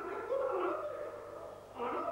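A man speaking through microphones in a large hall, in phrases with a short pause a little past the middle.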